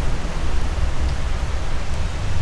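Steady wind noise rumbling on the microphone, a low, even rush with no other distinct sounds.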